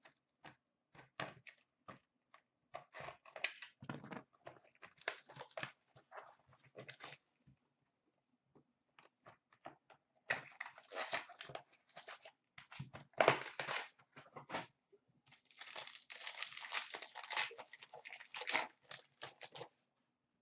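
Hockey card pack wrappers being torn open and crinkled by hand, in irregular crackling bursts with small clicks of handling. There is a short pause in the middle, then denser crinkling and tearing.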